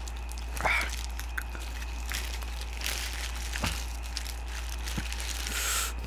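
Paper fast-food wrapper crinkling as it is handled close to the microphone, with scattered soft clicks and a longer rustle near the end.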